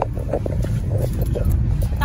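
Steady low rumble of a car's engine and road noise heard inside the cabin, with a single sharp knock at the very start.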